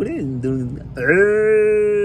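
A person's voice imitating a cow's moo: a short vocal sound, then one long call held at a steady pitch, starting about a second in.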